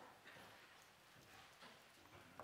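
Near silence: faint room tone with a few soft, scattered clicks and rustles of Bible pages being turned.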